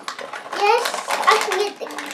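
A young child talking, the words indistinct.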